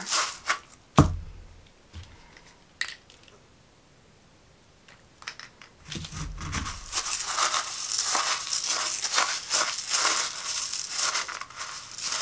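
Crushed glass grains, wet with alcohol ink, being stirred with a wooden stick in a clear cup: a gritty, crackling scrape of glass on glass. It starts with a few clicks and a single loud knock about a second in, goes quiet for a few seconds, then stirs continuously through the second half.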